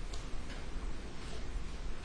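Courtroom room tone: a steady low hum with a few faint, irregular ticks and clicks.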